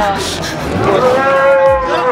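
A cow or bull mooing: one long, steady call that begins about half a second in and runs on to near the end.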